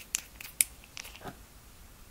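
A few small, sharp clicks and taps of metal washers and a rubber bump stop being handled and slid onto a motorcycle shock absorber's shaft, the loudest a little over half a second in.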